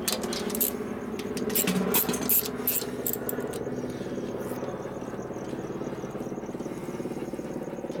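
Hand tools working on the engine during a top-end teardown: a ratchet and wrench clicking and metal clinking as bolts are undone, over a steady background hum. The clicks and clinks come thickest in the first few seconds, and a faint regular ticking runs on after.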